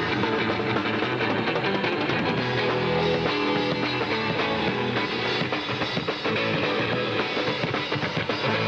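Live rock band playing at a steady loud level: electric guitar over a drum kit.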